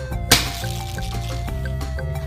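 Background music with a steady beat, with one sharp plastic click about a third of a second in from a finger flicking the plastic cheese pointer of a board-game spinner.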